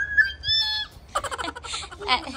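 A toddler's high-pitched sing-song call: one held high note, then a run of shorter babbled syllables.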